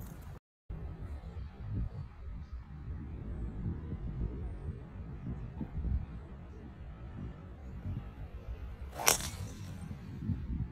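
A golf driver striking a teed-up ball: a single sharp crack with a brief ring about nine seconds in, over a steady low background rumble.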